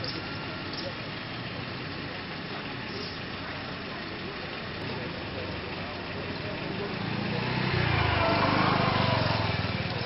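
Small motorcycle engine passing close by, growing louder from about seven seconds in, loudest near the end, then fading, over a background of voices.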